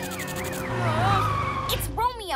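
Cartoon sound effects of the Cat-Car: a wailing siren that fades out about half a second in, then a tyre squeal as the car brakes to a stop, over background music.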